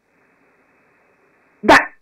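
Faint steady hiss, then near the end a single short, loud vocal burst.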